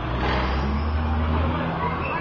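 A motor vehicle's engine running nearby, a low steady hum that drops away about one and a half seconds in.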